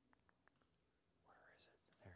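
Near silence: a few faint ticks in the first half second, then a faint whispered mutter about halfway through.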